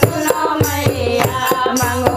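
A group of women singing a Hindu devotional song to the goddess (Devi bhajan) together, with a dholak and a hand-held frame drum keeping a steady, quick beat.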